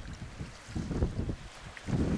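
Wind buffeting the microphone in uneven low rumbling gusts, over a steady hiss of choppy sea.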